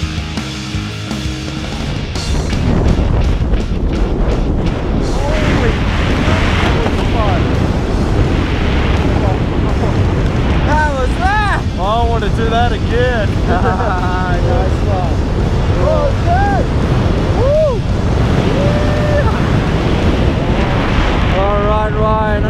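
Loud, steady wind rushing over a handheld camera's microphone during a tandem skydive, with voices calling out over it from about five seconds in. Music at the start ends about two seconds in, where the wind noise rises.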